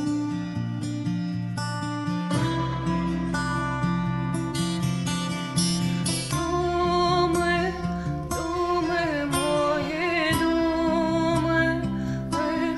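A song's instrumental opening on plucked strings. About six seconds in, a woman's voice comes in singing over it with vibrato.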